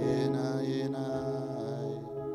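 Electric keyboard playing slow, sustained ambient chords, swelling louder at the start with a hiss in the high range that fades out near the end.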